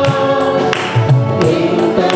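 A mixed church choir singing a Telugu Christian worship song in unison into microphones, holding long notes over a steady low backing beat.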